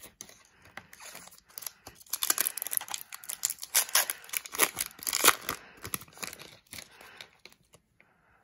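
Foil trading-card pack crinkling and being torn open by hand: a dense run of crackles that builds about two seconds in and thins out after about five seconds.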